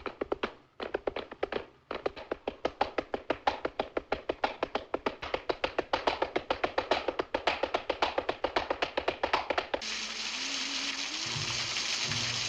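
A group clapping hands in flamenco palmas style: broken bursts at first, then a fast steady rhythm of about seven claps a second that grows louder. About ten seconds in it cuts off suddenly into a steady hiss.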